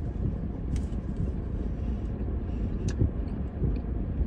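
Steady low rumble inside a parked car, with a few small clicks and crinkles from chewing and burrito wrapper paper, the clearest about a second in and again near the end.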